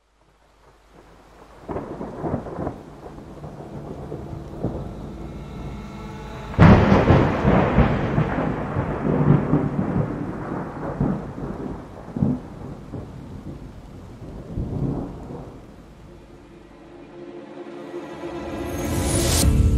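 Thunderstorm with rain: low rumbles build from near silence, then a sharp thunderclap about six and a half seconds in rolls on and slowly fades away.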